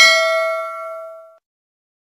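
Notification-bell sound effect: a single bell ding that rings with several clear tones and fades out within about a second and a half.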